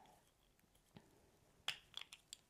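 Near silence broken by a few small sharp clicks: a faint one about a second in, then two sharper ones near the end, as the snap-on plastic lid of a mini ink cube is worked open.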